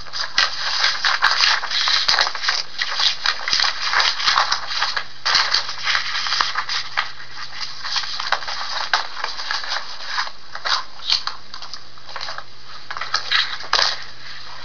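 Irregular rustling and crinkling made of many short crackles that come thick, then thin out and come in patches near the end, over a faint steady low hum.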